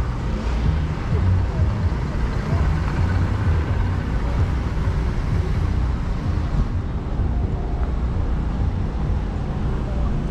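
Steady low rumble of wind buffeting the microphone of a camera worn by a rider on a walking horse.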